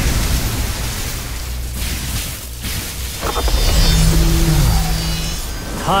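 Dramatic score music over a continuous deep rumble of thunder from a summoned lightning storm, with sustained tones coming in about four seconds in.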